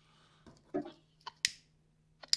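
About four short, sharp clicks in a pause, the loudest about one and a half seconds in, over a faint steady low hum.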